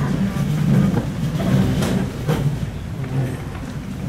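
A man's low voice in long drawn-out tones, with a couple of sharp clicks in the middle.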